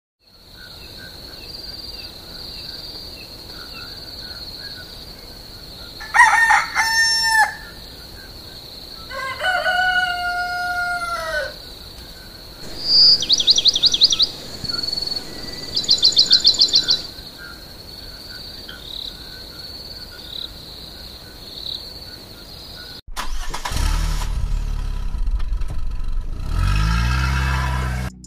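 Farmyard ambience: a rooster crows twice over a steady high-pitched tone and faint bird chirps, followed by two rapid trilling bird calls. Near the end a lower, steadier sound takes over.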